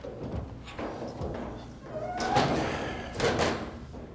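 Heavy wooden cabinet knocking and thudding against the stairs and railing as it is hauled up a staircase, several knocks with the loudest about halfway through and again near three-quarters.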